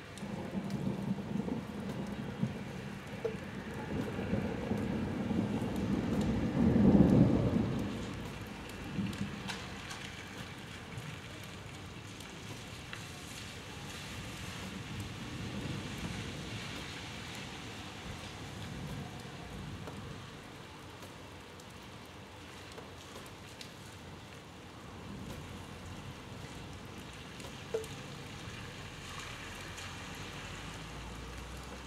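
A thunderclap rolls in, rumbling and building to a loud peak about seven seconds in, then fading away over several seconds. Steady rain falls throughout.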